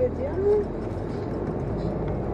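Steady low rumble of a car's engine and tyres heard from inside the cabin while driving slowly in city traffic.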